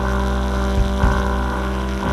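Saxophone holding one long low note over a steady low hum, with two soft drum thumps about a second in.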